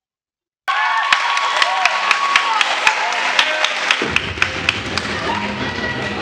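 Soundtrack of inserted wrestling footage: a dense roar of crowd noise with many sharp claps and thuds and some voices, cutting in abruptly from dead silence less than a second in. A deep low rumble joins about four seconds in.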